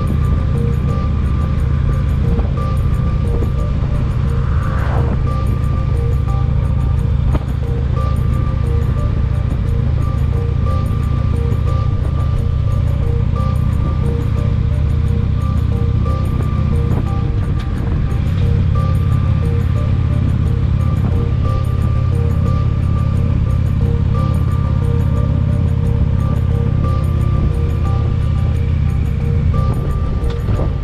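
Harley-Davidson touring motorcycle cruising at road speed: a steady low engine-and-exhaust drone under the rush of wind over the fairing and microphone, with music playing along.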